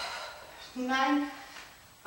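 A woman counting a rep aloud, one drawn-out number about a second in, with a sharp breath out at the start while straining through the exercise.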